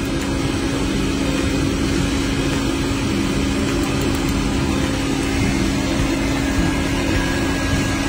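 Steady mechanical hum of a running machine or motor, with one constant low tone under an even noise, unchanging throughout.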